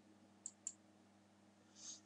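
Two quick, faint computer-mouse clicks about half a second in, a quarter second apart, advancing a presentation slide, over a faint steady electrical hum.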